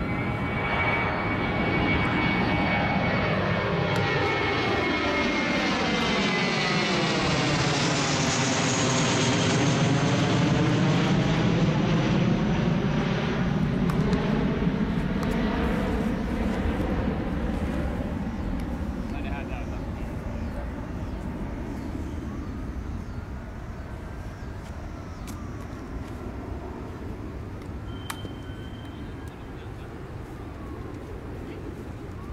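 An airplane passing low overhead. A high whine falls in pitch at first, then the engine noise swells to its loudest around the middle with a sweeping, phasing sound, and fades away over the last dozen seconds.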